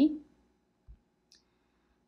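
Two faint computer mouse clicks: a short dull knock about a second in and a tiny sharp tick shortly after, as an item is picked from an on-screen dropdown list.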